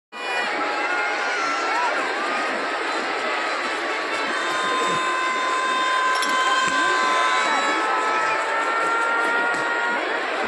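Large outdoor crowd chattering and cheering, a steady dense din, with several long, high held tones over it that glide slightly in pitch.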